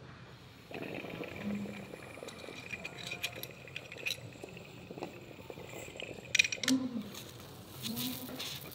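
Glass dab rig bubbling softly as a hit is drawn through its water, with a faint steady whistle of air through the rig. Light glass-on-glass clinks from the carb cap and quartz banger come a few times, around the middle and again near the end.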